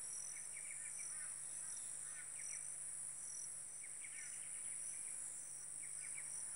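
Steady high-pitched insect chorus, with short bird chirps breaking in several times.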